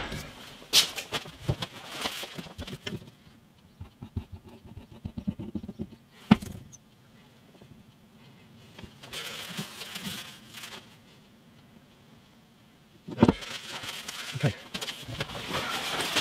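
Hands fitting a strip of plastic binding to the edge of a guitar headstock for gluing: small clicks and taps, one sharp click about six seconds in, and scratchy rustling stretches in the second half.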